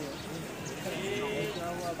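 Men's voices talking in the background, with a brief high trill about a second in.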